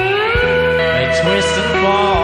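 Live rock music in an instrumental passage: electric guitar notes sliding and bending in pitch over held low bass notes.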